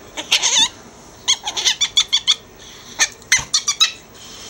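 Ferret squeaking while being played with: quick runs of short, high squeaks in three bursts.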